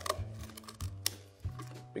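Shellfish shears cutting into a sea urchin's shell: several sharp, crunchy snips, the loudest about a second in.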